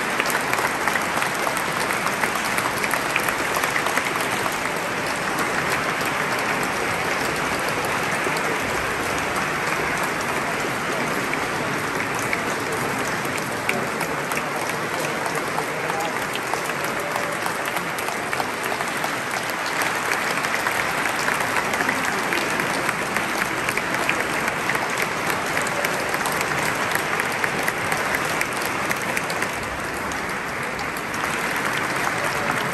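An audience applauding steadily, many hands clapping at once in a dense, unbroken stream.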